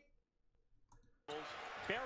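Near silence broken by a single computer mouse click about a second in. After it comes faint background sound with a voice from a newly started video.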